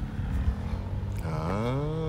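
A vehicle engine revving up and back down in one smooth rise and fall of pitch, starting a little over a second in, over a steady low rumble.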